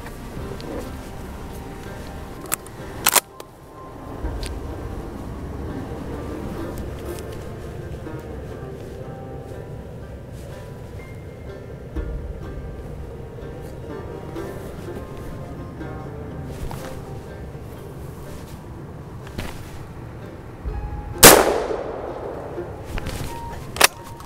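A single shotgun shot about 21 seconds in, the loudest sound, ringing out briefly, fired at a ruffed grouse. A couple of sharp clicks come near the start, over faint background music.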